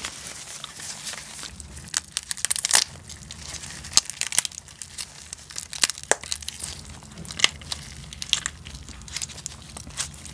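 Gloved hands breaking apart a soy-sauce marinated raw crab and squeezing its meat out of the shell, with many irregular crackles and sharp snaps of shell.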